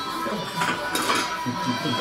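Low murmur of voices with a few light clinks of plates and cutlery.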